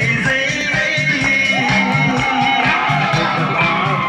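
Live song: a singer's voice over band accompaniment with guitar, bass and a steady beat.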